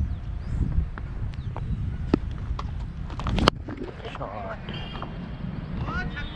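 A cricket ball struck once: a single sharp crack about three and a half seconds in, the loudest moment, over the low rumble of wind on the helmet camera's microphone. Faint shouts from the field follow.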